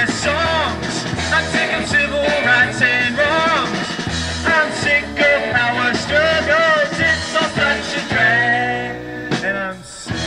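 Rock band music: electric guitar, bass and drums playing, with a lead line that bends up and down in pitch. The music drops briefly near the end before the guitar comes back in.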